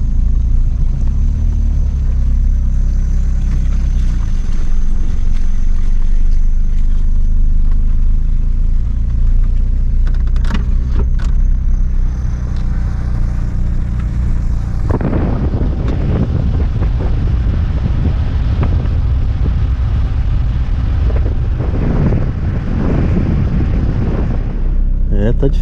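Car engine running at low speed, heard from inside the cabin as the car is driven slowly over a grassy dirt track: a steady low hum. About fifteen seconds in, the sound suddenly turns rougher, with a louder rushing noise over the hum.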